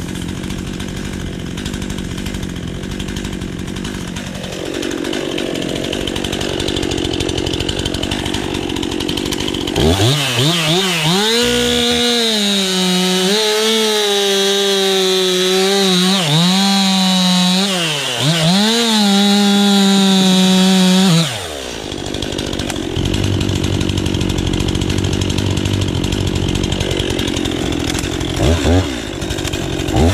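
Stihl two-stroke chainsaw running at idle, then opened up to full throttle about ten seconds in and cutting through a log for about ten seconds, its pitch dipping several times under load in the cut. It drops back to idle abruptly and is blipped a few times near the end.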